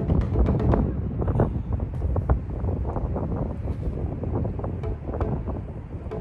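Wind buffeting the microphone: a loud, uneven low rumble broken by many sharp crackles.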